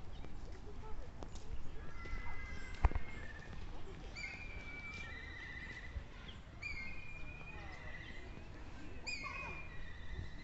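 Birds singing among trees: repeated clear whistled phrases and warbled trills every couple of seconds, over a low steady rumble, with one sharp knock about three seconds in.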